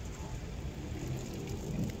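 Steady, low car-cabin noise of a car driving slowly: engine and road rumble with nothing standing out.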